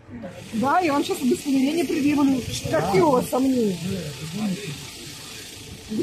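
A person's raised voice, high-pitched and talking loudly for a few seconds, over a steady hiss.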